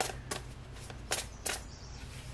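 Tarot cards being shuffled by hand: a handful of short, crisp card snaps in the first second and a half, over a faint steady low hum.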